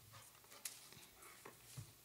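Near silence: room tone in a meeting room, with a few faint clicks.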